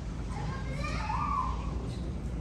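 Terminal ambience: a child's high-pitched voice calls out briefly over background chatter and a steady low hum.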